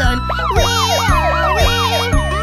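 Cartoon fire-truck siren sound effect: a fast up-and-down wail of several quick sweeps, over upbeat children's music with a steady beat.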